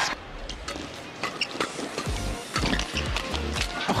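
Fast badminton rally: irregular sharp clicks of rackets hitting the shuttlecock and short squeaks of court shoes, over background music whose low bass comes in about halfway.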